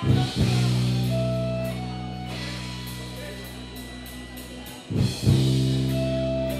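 A heavy metal band playing live: big distorted guitar and bass chords are struck at the start and again about five seconds in, each left ringing and slowly fading. Light, regular cymbal ticks run between the chords.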